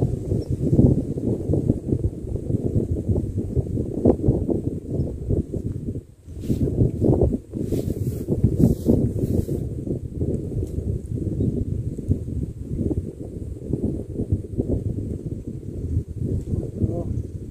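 Wind buffeting the microphone: a loud, continuous low rumble that rises and falls, with a brief lull about six seconds in and a few short rustles just after.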